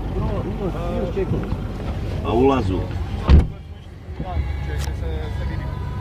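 A car's rear door shutting with a single solid thump about three seconds in; the outside sound drops away after it, leaving a low steady hum inside the cabin.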